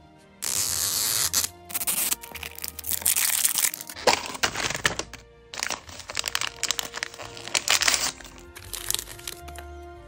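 Plastic toy capsule ball and small printed plastic wrapper packets being cracked, torn and crinkled open by hand, in bursts of loud crackling, over background music.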